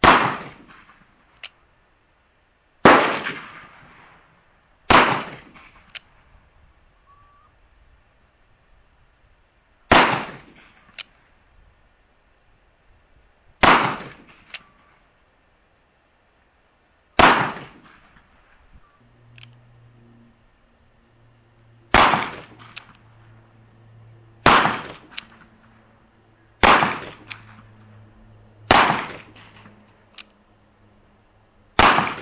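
Uberti-made reproduction 1849 Colt Pocket .31 caliber cap-and-ball revolver firing black-powder shots, ten in all, single shots two to five seconds apart, each with a short decaying tail. A faint sharp click follows several of the shots, and a low steady hum comes in about two-thirds of the way through.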